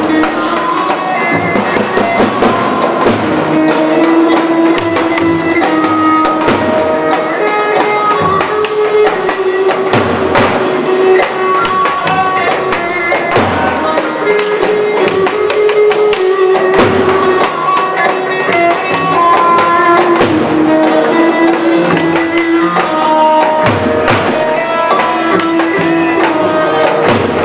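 Live Turkish halay dance music: a davul bass drum beaten in a steady rhythm under a held, ornamented melody line.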